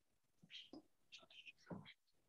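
Faint whispered speech, a short run of soft syllables starting about half a second in.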